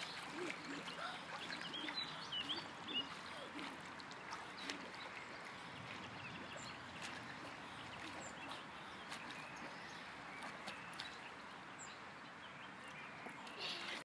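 Faint splashing of a swimmer doing breaststroke, growing fainter as he moves away, with a few short bird chirps about two to three seconds in.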